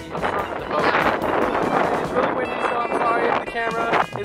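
Wind buffeting the microphone on an open boat deck, with background music under it; pitched, music-like sounds come through more clearly in the second half.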